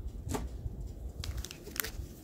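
Handling noise: a few light clicks and rustles as a flip phone is picked up from among others on a bedspread, over a low rumble from the hand-held camera.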